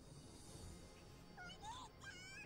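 Near silence, then near the end a child's voice calls out faintly and high in rising and falling pitch: anime dialogue, a sibling crying "Big Bro!".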